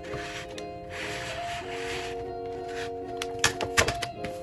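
Background music with sustained chords. Near the end, a quick run of sharp clicks and clacks from a manual water-activated gummed paper tape dispenser as a strip of tape is fed out.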